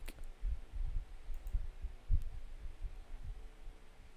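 Quiet room noise with irregular soft low thumps and a few short clicks. No music or voiceover from the editor's playback is heard.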